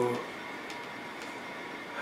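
Quiet room tone with a faint steady hum and a couple of faint clicks, after the tail end of a man's exclaimed "whoa" at the very start.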